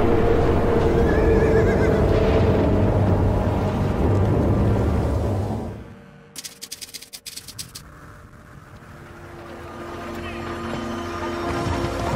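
Film-score music with a horse whinnying about one to two seconds in. The music fades out about halfway, a short rapid run of clicks follows for about a second and a half, and then new music swells back up.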